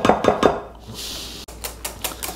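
A kitchen utensil knocking and scraping against a glass mixing bowl while whipped cream is added to a strawberry mixture. About one and a half seconds in comes a run of quick clinks as the mixture starts to be stirred.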